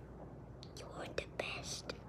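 Soft whispering in short, breathy snatches.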